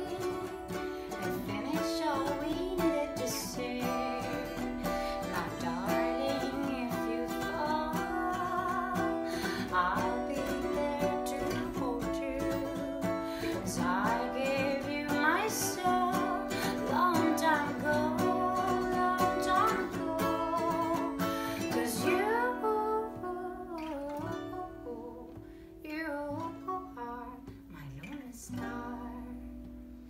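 Live acoustic performance: a steel-string acoustic guitar and a ukulele played together while a woman sings. From about two-thirds of the way in the playing grows quieter and sparser, with only short sung phrases.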